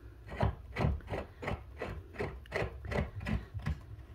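Threaded gas pipe being twisted by hand into a wall-mounted pipe flange, its threads rasping in a run of short strokes about three a second.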